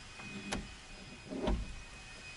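A sharp click, then a duller knock about a second later, from hands working on a Ford F150 pickup's open passenger door and its newly fitted tow mirror.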